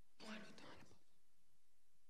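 A brief faint whisper, under a second long, near the start; otherwise near silence, just room tone.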